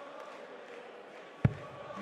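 A single dart thuds into the dartboard about one and a half seconds in, over the steady murmur of the arena crowd.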